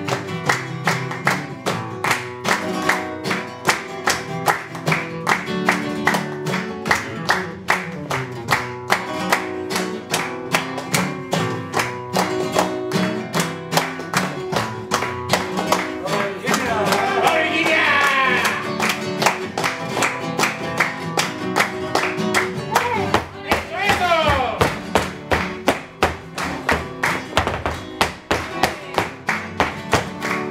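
Flamenco guitar playing with steady rhythmic hand clapping (palmas) marking the beat. Twice, about two-thirds of the way through, a voice briefly calls out over the music.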